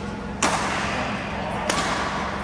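Badminton rackets striking a shuttlecock twice, about a second and a quarter apart: a sharp crack each time, with a short echo in the hall.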